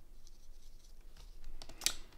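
Faint scratchy rustle of a fine paintbrush working over embossed watercolour paper, then a few light clicks and a sharp tap near the end as the brush is laid down on the craft mat.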